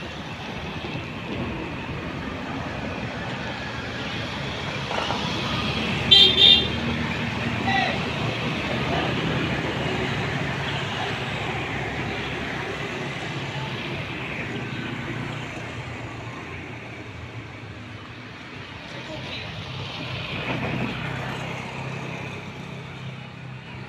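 Truck engine idling steadily, with a vehicle horn giving two short toots about six seconds in.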